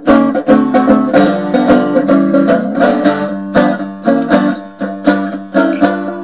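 CB Gitty Hubcap Howler, a fully acoustic fretted kit guitar with a hubcap resonator, strummed in a quick, even rhythm over a sustained low note, giving an old-time sound.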